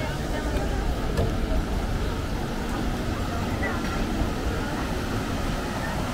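Steady low outdoor rumble with faint, brief voices of passers-by.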